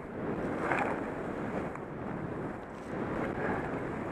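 Steady rush of wind across a helmet camera's microphone while skiing downhill, mixed with the hiss of skis running on groomed snow.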